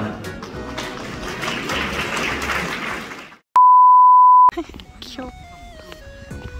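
Crowd noise and music in a hall that fade out over about three seconds, then a loud steady one-kilohertz beep lasting about a second, an edited-in bleep tone, followed by soft background music.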